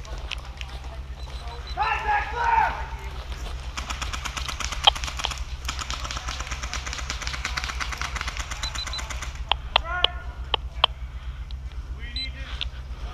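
Airsoft electric gun (AEG) firing full-auto at a distance: a rapid, even rattle of shots that lasts about five seconds. Voices call out briefly about two seconds in and again near the end, with a few single sharp cracks just before the second call.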